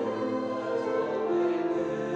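Mixed-voice high school choir singing sustained, slow-moving chords.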